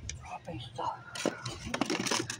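A soft whispering voice, too quiet for words to be made out, with a few light clicks near the end.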